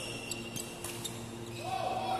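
Badminton play in a sports hall: a few sharp clicks of rackets striking a shuttlecock, along with high squeaks of court shoes on the floor.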